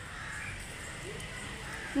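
Faint outdoor background with distant birds calling, a few short calls over a steady low hiss.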